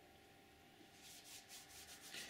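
Near silence, then from about a second in, faint soft rubbing of hands rolling cotton wool between the palms into a candle wick.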